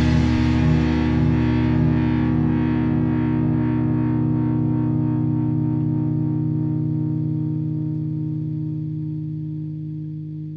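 Distorted electric guitar holding the final chord of a rock song, ringing out and slowly fading away.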